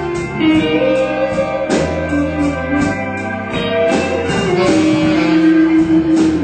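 Live blues band playing an instrumental passage: a lead line of held, bending notes over electric bass, drums and keyboard.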